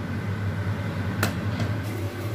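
A steady low machine hum with a light hiss, and a single sharp click a little past halfway.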